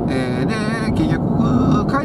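Steady road and engine noise inside a moving car's cabin, with a man's voice over it making drawn-out, wavering sounds in the first second and again near the end.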